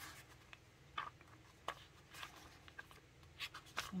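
Thin pages of a Hobonichi Cousin planner being leafed through by hand: a handful of faint, short paper rustles and flicks.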